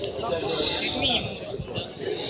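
A crowd of spectators talking over one another, with a hissing noise that is strongest about half a second to a second in.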